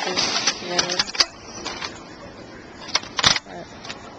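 Clear plastic food pack being handled: a few sharp clicks about a second in and a short, loud crackle about three seconds in.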